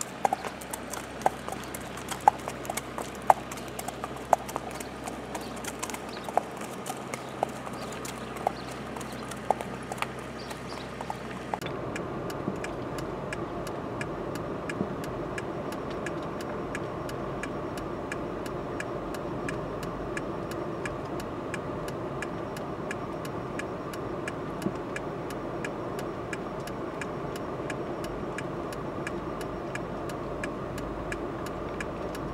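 Hooves of two Norwegian Fjord horses clip-clopping at a walk on wet pavement, sharp separate strikes. About twelve seconds in, a steady vehicle engine and road noise takes over, with the hoofbeats fainter beneath it.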